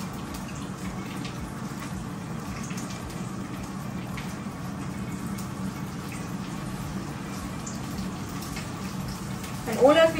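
Steady hiss of a frying pan heating on a gas stove, with the low hum of an air fryer running under it and a few light utensil clicks.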